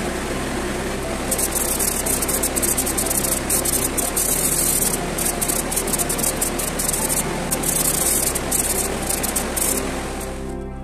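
Paint spray gun hissing in uneven bursts as it sprays black polyurethane paint onto an iron cauldron, starting a little over a second in, over a steady low hum.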